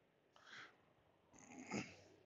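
Near silence with two faint, short breaths close to the microphone: a weak one about half a second in and a louder one near the end.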